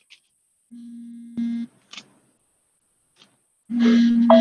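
A steady low electronic tone, like a telephone line tone, sounding for about a second with a sharp click partway through. After a short silence it starts again near the end.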